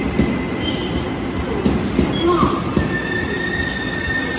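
Tze-Chiang express train rolling slowly along the platform as it pulls into the station, its wheels rumbling with irregular knocks and brief squeals. From about three seconds in, a steady high squeal sets in as it brakes.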